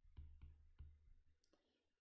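Faint clicks and taps of a stylus on a writing tablet during handwriting, about five in a second and a half, then stopping.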